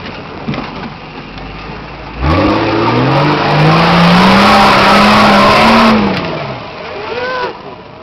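Nissan Patrol Y60's 4.2-litre straight-six diesel running low, then suddenly revved hard about two seconds in. The pitch climbs, holds high under a loud rush of noise for several seconds, and falls away about six seconds in, as the truck works its way down a steep, muddy gully.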